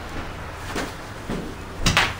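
Handling noise from a handheld camera being carried: a few soft knocks about half a second apart, the last and loudest near the end, over a low steady hum.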